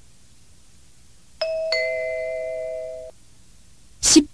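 Two-note descending electronic chime, a ding-dong, starting about a second and a half in, the second note a little lower, with both fading out by about three seconds. It is the signal between questions on a recorded English listening test, marking the move to the next item.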